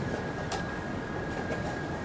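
Steady background noise of a tournament playing hall, with a constant faint high whine, and a couple of soft clicks about half a second and a second and a half in.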